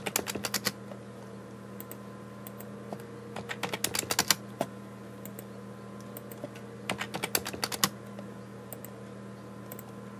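Computer keyboard keystrokes in three short quick bursts, near the start, around the middle and a little later, with a few single clicks between, over a steady low hum.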